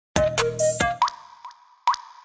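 Short electronic intro jingle for a channel logo. It opens with a brief, loud cluster of bright synth notes that change pitch, then comes a run of short plucked 'plop' notes, about two a second, each leaving a ringing echo that fades.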